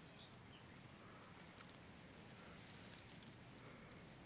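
Near silence: faint, even outdoor forest ambience.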